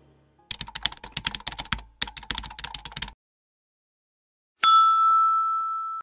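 Typing sound effect, a fast run of keyboard clicks lasting about two and a half seconds with one short break, followed after a silent gap by a single bell-like ding that rings on and slowly fades: the stock sound effects of a subscribe reminder.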